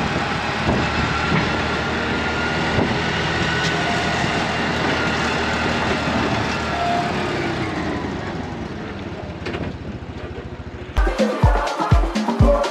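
Steady, dense noise of a running vehicle or traffic, easing off somewhat after about eight seconds. About eleven seconds in, dance music with a heavy, regular bass beat cuts in.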